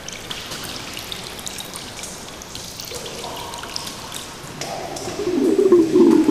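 Soft dripping and trickling of liquid with scattered small ticks. About five seconds in, a wavering low humming tone swells in.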